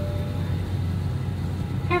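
Steady low hum of a parked Airbus A320's cabin ventilation, heard inside the cabin. The tail of a single cabin chime tone fades out in the first half second.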